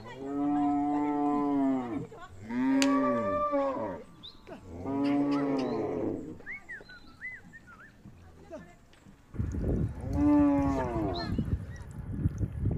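Cattle mooing: four long, drawn-out moos, three close together in the first six seconds and one more near the end. A few short high chirps fall in the gap between them.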